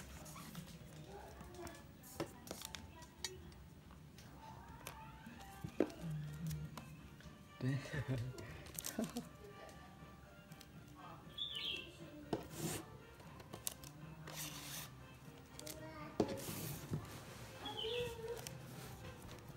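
Handling noise of a MacBook Air being unboxed: scattered light knocks, taps and rubbing of the cardboard box and the laptop's aluminium body as it is lifted out of its tray, with sharper knocks about six, eight, twelve and sixteen seconds in.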